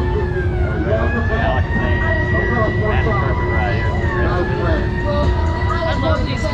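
Fair ride machinery running as the ride gets under way: a steady high-pitched whine that rises in pitch during the first couple of seconds and then holds, over a low rumble, with people's voices around.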